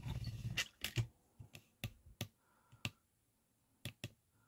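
Handling noise from the camera being repositioned and raised: about eight irregular sharp clicks and taps spread over a few seconds, with a faint rustle at the start.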